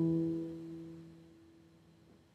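A chord on a nylon-string classical guitar ringing out and fading, nearly gone by about a second and a half in.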